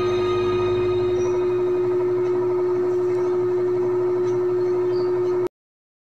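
The final held chord of a karaoke backing track, ringing as one steady, unwavering note with fainter tones above it, then cut off abruptly about five and a half seconds in.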